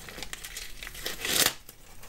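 Panini sticker packet's shiny plastic wrapper crinkling as it is torn off the stack of stickers, with one louder rustle about one and a half seconds in.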